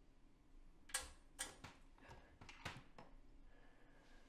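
Five or six sharp, crisp clicks and crackles from a small object being handled in the hands, spread over a couple of seconds against a quiet room.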